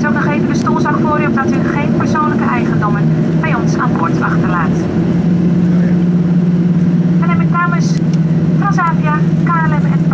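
Jet airliner's engines at low power heard inside the cabin while taxiing after landing: a steady low drone, with a humming tone that comes in about three seconds in and grows louder about five seconds in. A cabin announcement plays over the drone.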